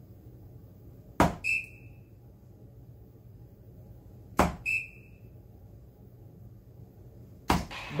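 Three soft-tip darts striking a Granboard electronic dartboard about three seconds apart, each sharp thud followed a moment later by a short electronic beep as the board registers the hit.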